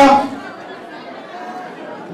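The last syllable of a man's voice through a microphone and loudspeakers, then a lull filled with quiet background chatter from people in the hall.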